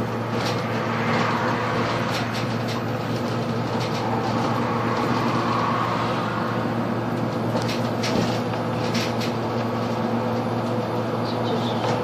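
Cabin noise inside a Solaris Urbino 18 III Hybrid articulated city bus driving along a main road: a steady drivetrain hum with road noise and scattered light interior rattles.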